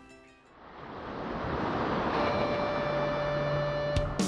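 Ocean surf noise fading in over the first couple of seconds and then holding steady, with soft sustained music notes coming in about halfway through.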